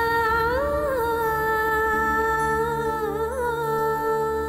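Background score: a single long wordless note, hummed or sung, held steady with a brief lift in pitch just before a second in and a small ornamental wobble near three seconds.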